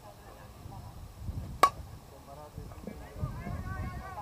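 Softball bat striking the ball about a second and a half in: one sharp crack with a brief ring. Players' voices call out near the end.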